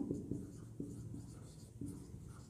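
Marker pen writing a word on a whiteboard: faint strokes of the felt tip across the board.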